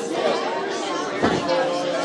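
Many people talking at once in a large room, their voices overlapping in a general chatter, with a brief bump a little over a second in.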